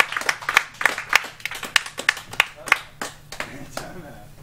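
Sparse clapping from a small audience: a handful of people's separate, irregular claps that die away shortly before the end.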